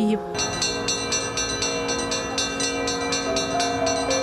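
Church bells ringing, struck in quick succession and sounding together with a steady hum of overlapping tones. They start about a third of a second in.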